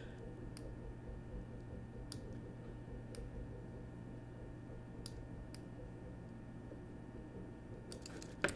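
About six sparse single clicks from computer mouse and keyboard use, spaced a second or more apart, over a low steady hum.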